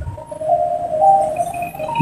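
Soft background music: a simple melody of held single notes stepping between a few pitches.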